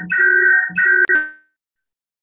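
Electronic ringtone: a short chiming pattern of high steady tones repeating about twice a second, cut off abruptly with a click a little over a second in.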